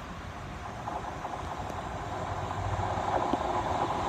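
Class 150 diesel multiple unit approaching along the track, its diesel engine and wheel-on-rail rumble growing steadily louder as it nears.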